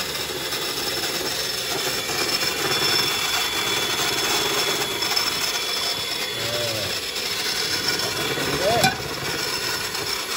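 Electric hand mixer running steadily, its twin beaters whisking pancake batter in a plastic mixing bowl as melted butter is poured in. A single sharp knock near the end.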